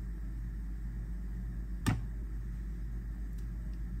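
One sharp knock about two seconds in as a chef's knife and a halved avocado with its pit are handled over a plastic cutting board, against a steady low hum.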